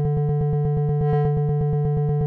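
Ableton Live's Wavetable software synthesizer playing a single steady low note that pulses rapidly, about ten times a second.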